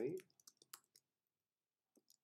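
Computer keyboard being typed on: a quick run of about five light keystrokes in the first second.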